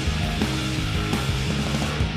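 Background rock music with a steady, dense bass line.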